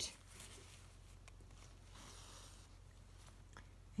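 Faint rustle of embroidery thread being drawn through stamped cross-stitch fabric, with a few small ticks of the needle, over a low steady hum.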